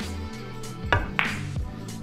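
A pool cue's tip striking the cue ball a little under a second in, then a moment later the sharper click of the cue ball hitting the object ball, a low-with-right-spin shot struck too thick. Background music plays underneath.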